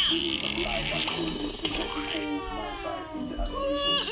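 Cartoon children's voices yelling and wailing in long, held cries; about halfway through, one cry slides slowly down in pitch.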